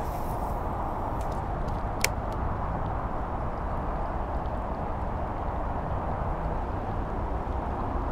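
Steady low roar of distant road traffic, with a single sharp click about two seconds in.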